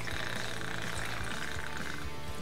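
Gin pouring in a steady stream from a bottle's metal pour spout into a glass champagne flute.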